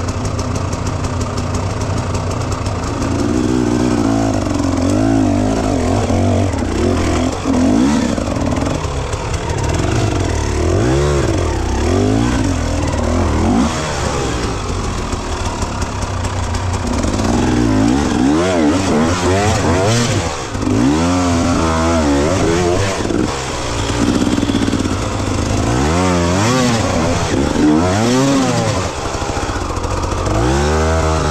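Enduro dirt bike engine revving up and down again and again as the throttle is worked climbing a rutted dirt trail, with quicker, choppier revs in the second half.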